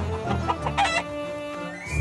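A hen clucking and squawking in a short burst about half a second in, over background music that holds sustained notes and swells near the end.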